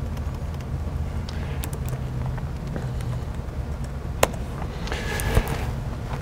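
Steady low hum of a lecture hall's microphone system with scattered clicks from laptop keys or trackpad, including one sharp click about four seconds in and a duller thump a second later.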